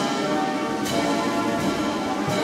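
Military brass band playing slow music in sustained chords, with two percussion strikes in the second half as part of a steady slow beat.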